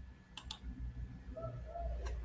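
Two quick sharp clicks close together about half a second in, over a faint low hum.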